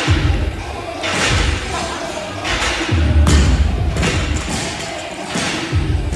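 Repeated dull thuds, roughly one a second, from a steel pull-up rig jolting as a man swings through kipping pull-ups, with music faint underneath.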